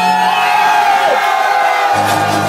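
Dance-floor crowd cheering and whooping over a breakdown in house music: the beat and bass drop out about a second in, leaving held synth tones, and the bass comes back in at the end.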